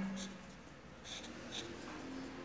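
Faint scratching of a felt-tip highlighter on paper as a word is circled, in a few short strokes.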